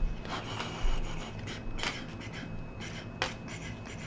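Tarot cards being shuffled and handled: a continuous papery rubbing with a few louder strokes scattered through it.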